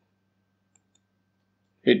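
Faint computer mouse clicks in near silence, with a man's voice starting to speak near the end.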